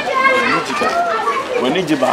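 Speech only: voices talking back and forth.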